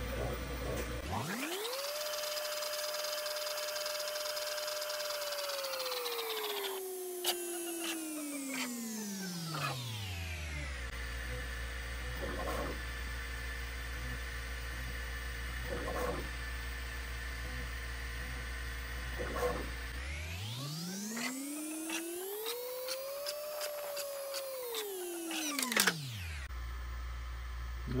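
Bambu Lab P1P 3D printer running its dynamic flow calibration print. The stepper motors whine, twice gliding up in pitch to a high held tone and back down as the toolhead sweeps the test lines. A steady low hum runs underneath, with a few short ticks in the quieter middle stretch.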